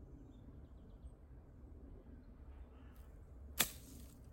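A golf club striking the ball once, sharply, about three and a half seconds in: a short recovery shot played out of long grass from under trees. Before it, only a faint, steady outdoor background.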